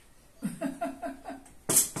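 A woman laughing in a quick run of short ha-ha bursts, then a loud sharp knock near the end as a glass salad bowl is set down on the table.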